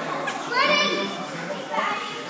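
Children's voices shouting and calling out in a large echoing room. A high, rising shout comes about half a second in and another near the end.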